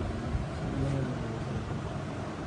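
Low, muffled voices over steady room noise.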